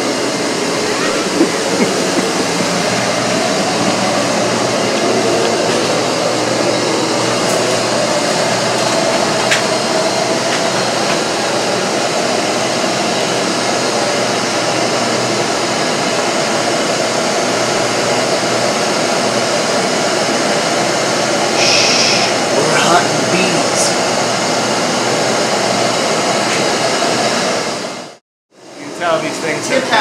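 Bee vacuum running steadily on low suction as its hose draws honeybees off the exposed comb. It cuts off abruptly near the end.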